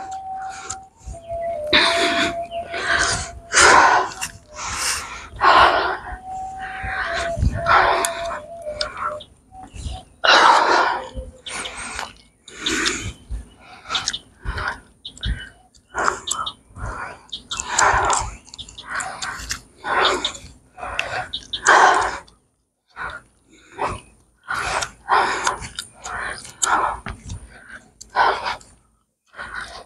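Footsteps going down open steel-grating stairs, about one and a half to two steps a second, ending on a concrete path.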